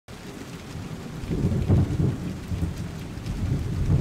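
Steady rain with two low rumbles of thunder, the first about a second and a half in and the second near the end.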